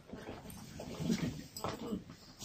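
A group of people stirring after a guided relaxation, with scattered soft vocal sounds such as sighs and yawns and a few louder ones about a second in and near the end.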